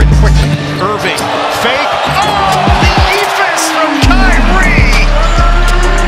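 A basketball dribbled on a hardwood court, with game noise, under background music. The music's bass drops out about half a second in and comes back about four seconds in.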